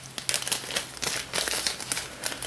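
Irregular crinkling and rustling of a plastic bag or packet being handled, in quick uneven bursts.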